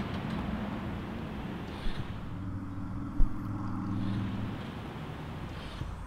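Outdoor street ambience with a vehicle engine running: a low rumble throughout, with a steadier engine hum coming up for about two seconds in the middle. A single thump about three seconds in.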